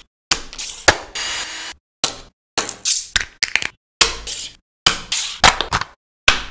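Small hard plastic toy parts being handled, set down and clicked together: sharp taps, clicks and light knocks in short bursts, each cut off by a sudden silence.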